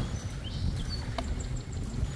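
Wind buffeting the microphone outdoors, a steady rumbling low noise, with a few short, high chirps from small birds.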